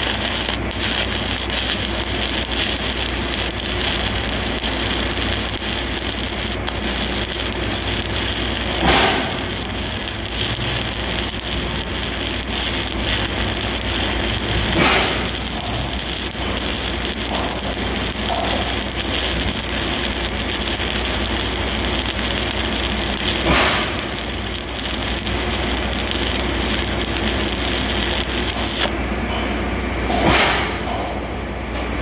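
Stick-welding arc burning overhead: a steady crackling hiss with a few louder flare-ups along the way. The arc stops shortly before the end.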